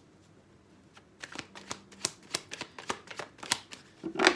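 Tarot deck being shuffled by hand: a run of quick, irregular card clicks starting about a second in.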